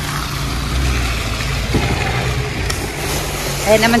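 Snowplow salt truck's engine running with a steady low hum while it spreads road salt.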